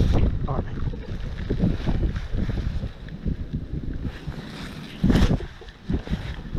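Wind rumbling on the microphone, mixed with irregular rustles and knocks from wet waterproof clothing and a landing net being handled. A louder surge about five seconds in.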